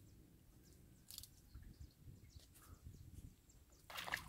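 Near silence: faint outdoor background with a few brief, faint ticks.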